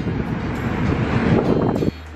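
Wind buffeting the camera's microphone, which has no wind muff over it: a loud, rough rumble that cuts off suddenly just before the end.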